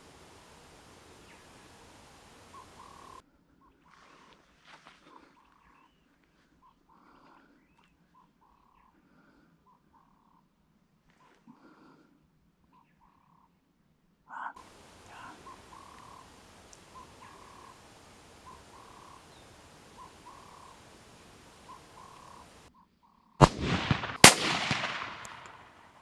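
A scoped hunting rifle fired near the end: two sharp cracks about a second apart, the second the loudest, followed by a fading echo. Before the shot there are faint, short bird calls repeated over a low background hiss.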